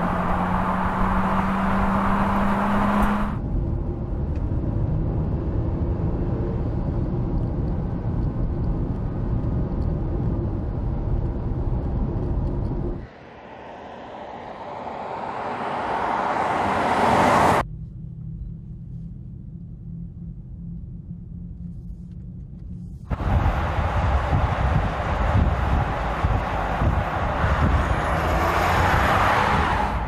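Audi Q8 TFSI e plug-in hybrid SUV driving, heard as tyre, wind and road rumble in a string of cut-together shots. About halfway through, the car approaches with a steadily rising rush that cuts off suddenly. A quieter low rumble follows, then louder driving noise returns.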